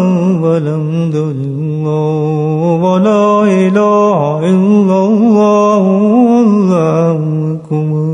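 A man's voice singing a slow, melodic Islamic devotional chant without instruments, with long held notes that waver and slide in pitch, and a short break near the end.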